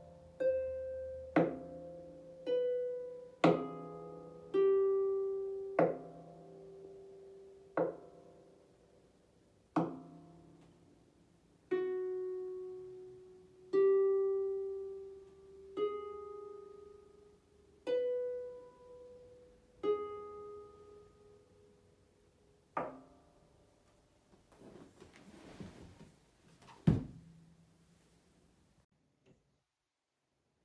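Solo harp played slowly, single plucked notes about every two seconds, each ringing out and fading. The last note comes near the end, followed by a faint rustle and one sharp thump.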